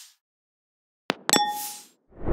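Transition sound effects for an animated title card: a short whoosh fades out at the start, followed by a moment of silence. About a second in comes a click and then a bright, bell-like ding with a brief swish.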